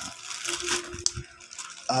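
Plastic courier mailer bag rustling and crinkling as a hand handles it, with a sharp click about halfway through.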